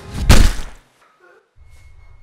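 A single loud gunshot from a pistol about a quarter second in, with a short echo. The background music cuts off right after it, leaving a moment of near silence before a low hum returns.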